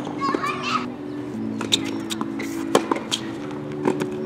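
Background music with slow, sustained chords, over the sharp pops of a tennis ball struck by racquets and bouncing on a hard court, at uneven intervals of about a second.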